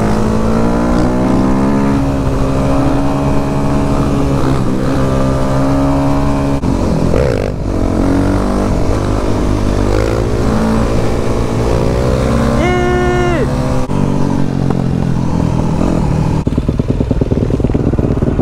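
Onboard sound of a 2010 Yamaha YZ250F four-stroke single-cylinder dirt bike ridden on the road, its engine note rising and falling with the throttle, with a second motorcycle running close ahead. About two-thirds of the way through, a steady beep-like tone sounds for about a second.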